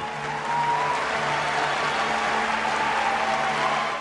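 Large theatre audience applauding steadily, with music playing underneath.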